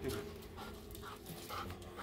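Golden retriever panting softly.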